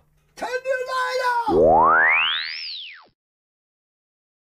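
A held, voice-like note, then a comic sound effect: a tone that sweeps steeply upward for about a second and then drops back down fast. The sweep is the loudest part and stops about three seconds in.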